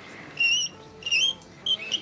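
Writing on a blackboard squeaking: three short, high-pitched squeals about half a second apart, the kind of sound that sets teeth on edge.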